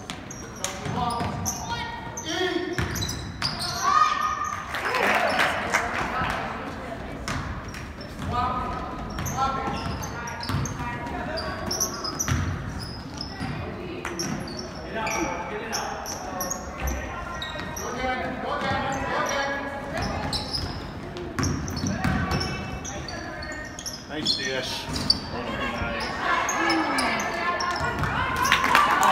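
A basketball bouncing on the hardwood floor of a large gym during live play, with players and spectators calling out throughout.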